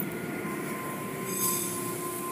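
Automatic car-wash tunnel machinery running, heard through a viewing window: a steady mechanical hum and whir, with a thin steady whine setting in about half a second in and a brief high squeal around the middle.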